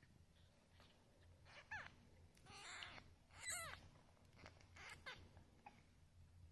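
One-week-old Ragdoll kittens mewing faintly: a few short, high cries that drop in pitch, the clearest about two and three and a half seconds in, with light rustling between them.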